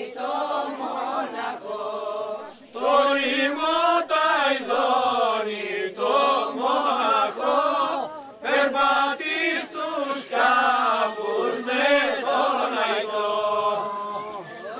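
A group of men and women singing a slow song together, in long phrases of held, wavering notes with short pauses for breath between them.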